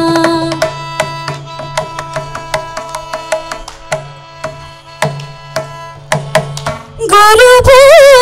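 Mridangam strokes in a Carnatic music interlude, a quick irregular run of drum beats over a faint steady drone, after a held note ends about half a second in. A woman's singing voice comes back strongly, with wavering pitch, about seven seconds in.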